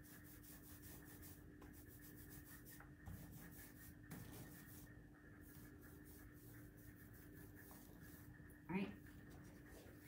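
Quiet, soft rubbing of a foam paint roller being worked over a stencil on a metal file cabinet, against a steady faint hum. A brief vocal sound comes near the end.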